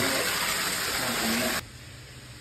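Water gushing steadily into a bathtub as it fills, cutting off suddenly about a second and a half in.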